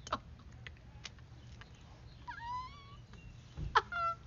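A woman laughing hard in short, high-pitched squealing bursts and gasps, the loudest burst near the end.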